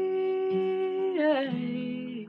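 A solo singer holds a long sung note over a softly played acoustic guitar; about a second and a half in, the voice slides down to a lower note.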